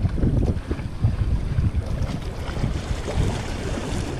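Wind buffeting the microphone in an uneven low rumble, with small waves washing against the boulders of a rock seawall.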